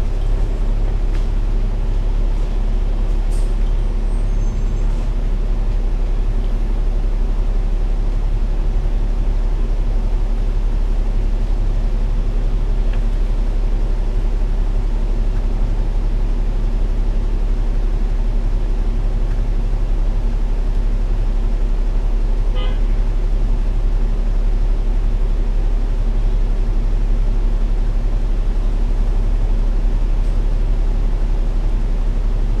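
Diesel engine of a KMB Alexander Dennis Enviro500 MMC double-decker bus idling steadily while the bus stands still, heard from inside the cabin as an even low hum and rumble.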